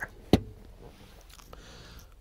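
A single sharp plastic click about a third of a second in, from the pickup's fold-down centre seat console with its cup-holder tray being closed.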